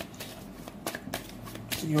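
Tarot cards being shuffled and handled by hand: a few short card snaps and flicks.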